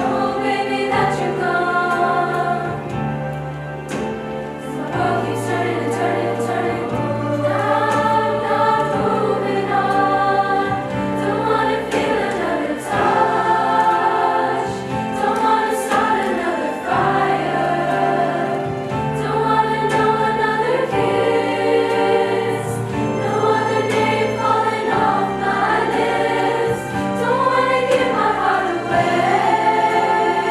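Girls' choir singing in parts, with steady low notes under the voices that change every second or two.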